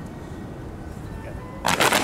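Several kung fu fans snapped open almost together near the end, a short cluster of sharp cracks over about half a second, against faint background music and low wind rumble.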